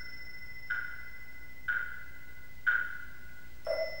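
A pitched percussion instrument struck slowly and evenly, four strokes about a second apart, each ringing briefly on the same note over a faint steady higher ring. A lower note joins on the last stroke.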